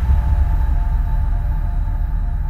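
Music: a loud, deep, sustained bass with several steady held tones above it, easing off near the end.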